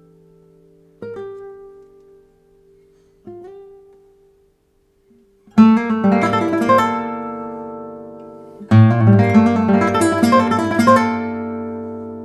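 Nylon-string classical guitar played solo: two soft plucked notes left to ring out, a brief silence, then two loud strummed chords about three seconds apart, each left to die away.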